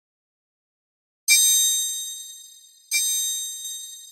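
Two bright, metallic bell-like dings, the first about a second in and the second about a second and a half later, each struck sharply and ringing out as it fades. They are the sound effect of a subscribe-button and notification-bell animation.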